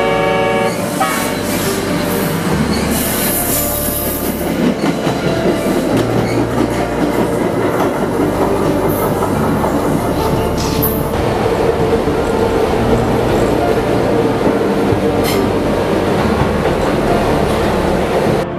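Subway train running: a loud, continuous rumble and clatter of wheels on rails. A chord-like horn sounds at the very start and cuts off within the first second.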